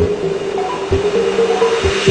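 Minimal electronic track: a rising white-noise sweep swells over a repeating synth riff, then cuts off sharply at the end as the kick and bass drop back in.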